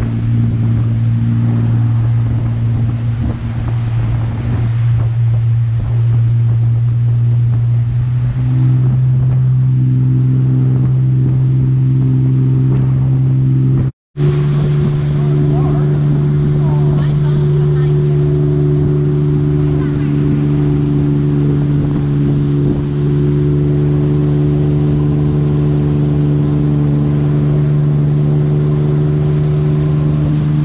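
Motorboat engine running at steady towing speed, a loud drone mixed with rushing wake water. Its pitch steps up slightly about a third of the way in. The sound drops out for a split second just before halfway, then the engine carries on at a slightly higher pitch.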